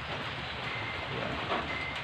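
Steady rain, an even hiss, with a faint high steady tone near the end.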